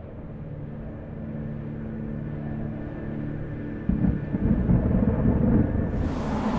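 A low rumbling drone with steady deep tones, turning into a louder, rougher rumble about four seconds in.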